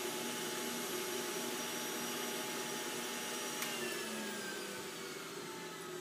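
Breville BJE200XL juicer's motor and cutting disc running empty after the apple has been juiced, a steady whine. About three and a half seconds in there is a click as it is switched off, and the whine begins to wind down.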